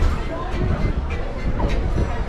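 Open pool-deck ambience: a steady low rumble under background voices and music.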